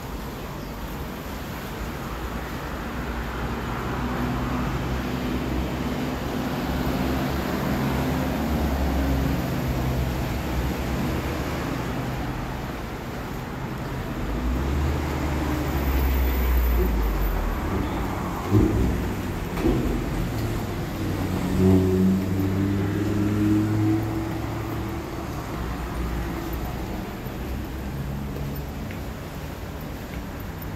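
Road traffic on the road below: engines hum and swell as vehicles pass and fade, with a deeper rumble from a heavier vehicle about halfway through. A couple of sharp knocks come a little past the middle.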